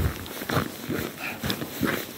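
Footsteps crunching on packed snow, about two steps a second.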